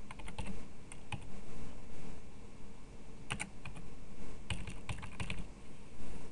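Typing on a computer keyboard: uneven key clicks, some coming in quick little runs.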